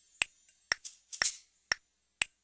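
A sparse percussion beat of sharp, finger-snap-like clicks, about two a second with an extra off-beat hit between some of them; no notes are sounding.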